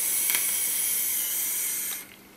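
A draw on a box-mod e-cigarette: a steady hiss of air pulled through the tank's airflow as the coil vaporises e-liquid, stopping abruptly near the end when the draw ends.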